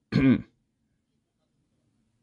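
A person clearing their throat once, briefly, just after the start.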